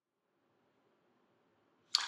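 Near silence: faint room tone, with a man's voice starting to speak right at the end.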